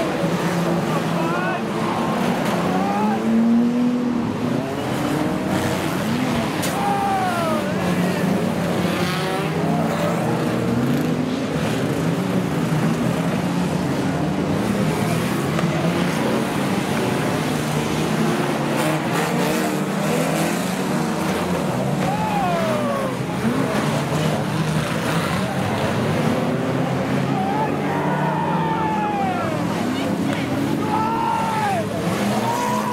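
A pack of 3-litre banger racing cars running hard round the oval, several engine notes rising and falling as the drivers rev and lift, with occasional bangs from car-to-car contact.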